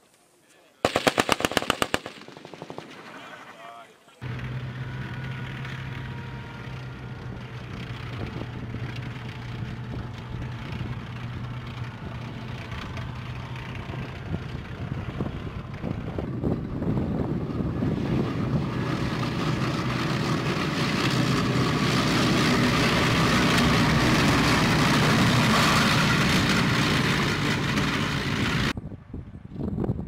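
A rapid burst of automatic gunfire lasting about a second, then from about four seconds in a military armoured vehicle's engine running steadily with a low hum, growing louder in the second half as the vehicle drives closer, and cutting off sharply near the end.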